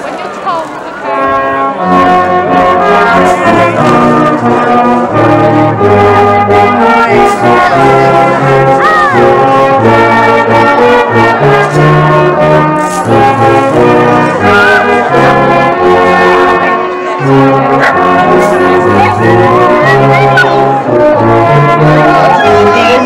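Music on brass instruments, several parts playing a tune together. It starts about two seconds in and then holds a steady, loud level.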